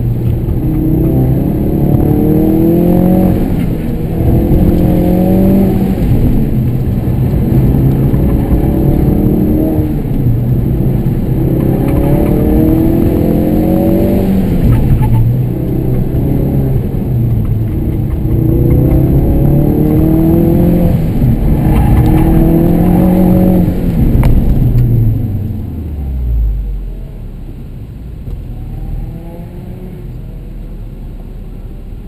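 Ford Focus RS's turbocharged 2.3-litre four-cylinder, heard from inside the cabin, revving up hard and dropping back again and again as it is driven flat out through an autocross course. About 24 s in the revs fall away and the engine settles to a low, easy drone as the car slows.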